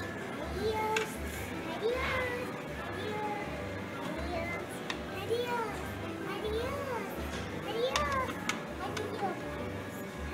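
Coin-operated kiddie ride playing its tune: a run of short notes that rise and fall, about one a second, over a regular low pulse, with a child's voice mixed in.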